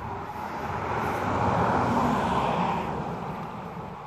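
A road vehicle passing by: engine and tyre noise swells to a peak about two seconds in, then fades away.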